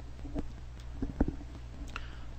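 A few soft clicks of a computer keyboard and mouse, the first about half a second in and a couple more around a second in, over a steady low electrical hum.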